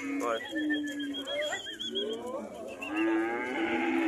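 Cattle mooing: two long, steady moos, the first about half a second in and the second starting near three seconds.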